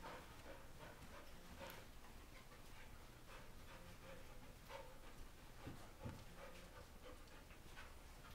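Near silence: faint sounds of a dog moving about and breathing as it searches a carpeted room, with soft scattered ticks and a couple of dull low thumps about six seconds in.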